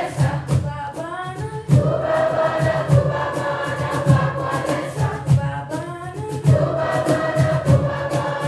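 Youth choir singing a Zambian song: a solo voice leads a short line, then the full choir answers with a held chord, twice, over a steady low beat.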